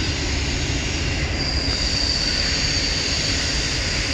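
Double-stack container train cars rolling across an arch bridge overhead: a steady rumble of wheels on rail, with a high, thin wheel squeal that swells louder in the middle.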